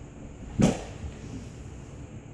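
A single dull thud about half a second in, as a body rolls onto a concrete floor, over a steady low hum.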